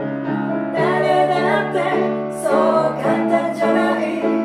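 A woman singing a song with grand piano accompaniment. The piano plays alone at first and her voice comes in about a second in.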